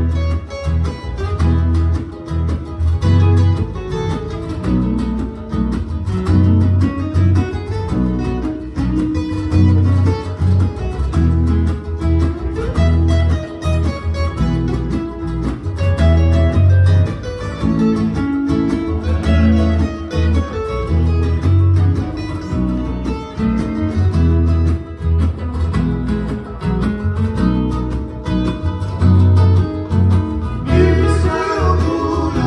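Fijian sigidrigi string band of acoustic guitars and a ukulele playing an instrumental passage with a steady, pulsing bass line, no singing.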